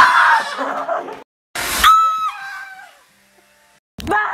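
People screaming in fright: a loud scream right at the start. After a short break comes a sudden noisy burst, then a second high, held scream that steps down in pitch and fades.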